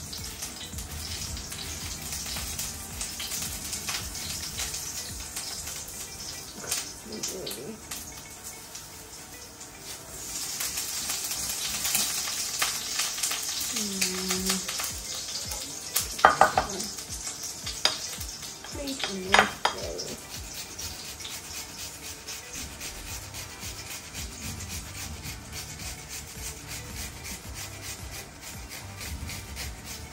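An onion being grated by hand on a metal grater, a long run of quick rasping strokes. Two short, louder pitched sounds come about two-thirds of the way in.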